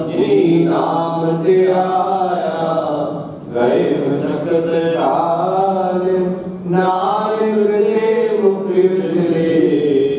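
Gurbani sung as a slow devotional chant, in drawn-out melodic phrases of about three seconds each, over a steady drone. There are two short breaths between phrases, at about three and a half and six and a half seconds in.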